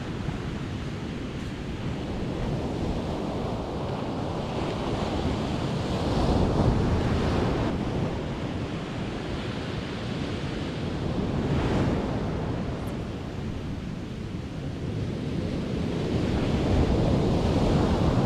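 Surf breaking on a sandy beach, the waves swelling and washing in every few seconds, with wind buffeting the microphone.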